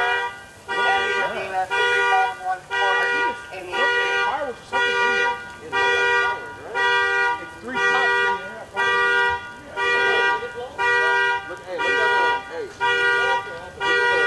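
Car alarm sounding a car's two-note horn in short, regular honks, about one a second.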